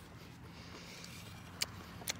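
Faint steady background noise in a pause between words, with a single short click near the end.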